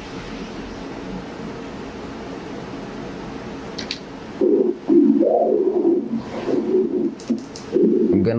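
Spectral Doppler audio from an ultrasound machine sampling a kidney's interlobar artery: a soft steady hiss, then from about halfway in a pulsing whoosh with each heartbeat as arterial flow is picked up.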